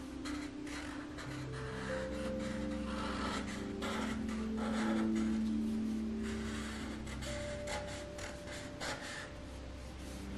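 Felt-tip Sharpie marker rubbing across paper in short, repeated strokes as lines are traced over, with soft background music of held notes underneath.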